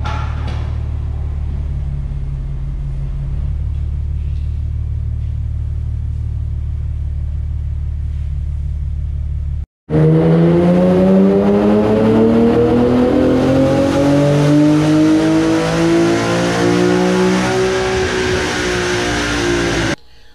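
2010 Infiniti G37's 3.7-litre V6 with a catless exhaust, first idling steadily as heard from inside the cabin. After a sudden cut about ten seconds in, the engine runs a full-throttle base pull on a chassis dyno, its pitch climbing steadily for about eight seconds and levelling off near the end.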